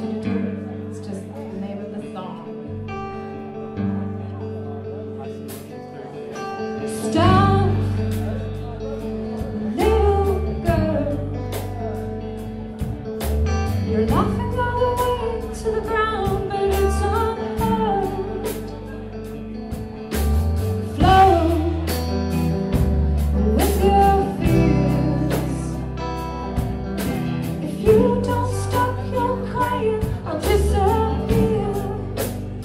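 Live rock band: an electric guitar plays a strong repeating riff, and drums and heavy low end come in about seven seconds in, with a voice singing over the top.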